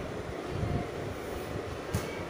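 A steady low rumble of background noise, with one sharp click near the end.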